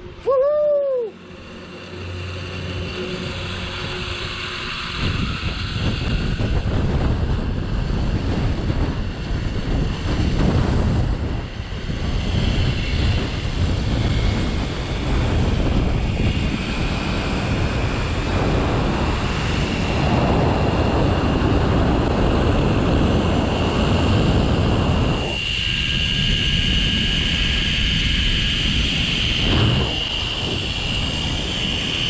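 Wind rushing over the microphone of a rider speeding down a steel-cable zip line, building up after the first few seconds. A steady high whine from the trolley's pulleys running on the cable rides over it and grows louder near the end.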